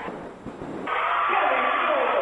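Narrow-band radio broadcast of a basketball game. A short lull of faint gym background noise, then the play-by-play announcer's voice comes back about a second in.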